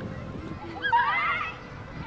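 Young girls laughing and squealing: a loud, high-pitched burst of wavering laughter about a second in, with more starting near the end.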